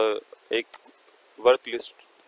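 A man's voice: a drawn-out vowel at the start, then a few short utterances separated by quiet gaps.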